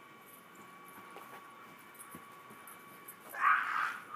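A puppy close to the microphone gives a loud, breathy huff near the end, followed by a second, weaker one. Before that there are only faint ticks and rustles.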